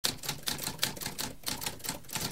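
Mechanical typewriter keys clacking in a quick, uneven run of keystrokes, about six a second.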